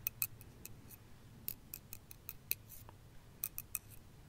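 Knitting needles clicking together as stitches are worked: a faint, irregular run of light clicks, about three or four a second.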